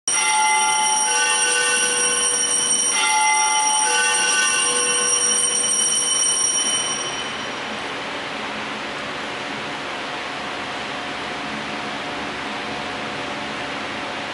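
Altar bells rung at the elevation of the host: a set of small bells struck about four times in the first four seconds, ringing out with many high tones and fading away by about seven seconds. A steady hiss of room noise follows.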